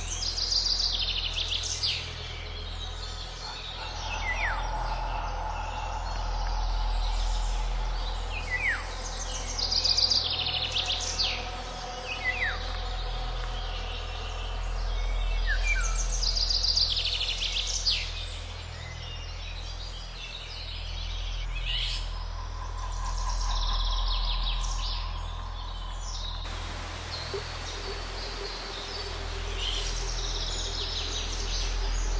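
Songbirds singing in short phrases every few seconds, high chirps and quick falling whistles, over a steady low rumble.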